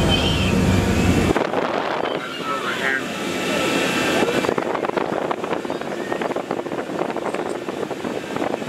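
Murmured passenger voices over a steady low hum inside a submarine cabin. The hum cuts off abruptly about a second in, leaving scattered voices and a run of quick clicks.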